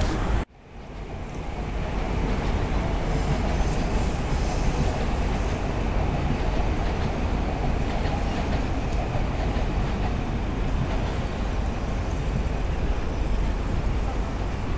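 Intro music cuts off suddenly about half a second in. City sound near JR Shinjuku Station then fades up and holds steady, led by the rumble of a train running on the station tracks.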